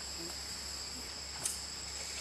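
Steady, high-pitched insect drone from the rainforest, with a low hum beneath it and a faint click about one and a half seconds in.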